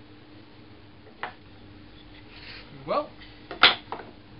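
Hand tools and wood being handled on a wooden workbench: a light click about a second in, then a sharp knock near the end, the loudest sound, as the Rider No 62 low-angle jack plane is set down on the board, with a smaller knock just after.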